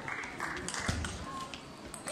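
Table tennis doubles rally: a few sharp clicks of the celluloid-type ball off bats and table, with a low thud about a second in from players' shoes moving on the hall floor. Clapping trails off at the start.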